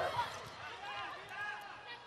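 Faint short shouted calls from a few voices, echoing in a large indoor arena during a volleyball rally.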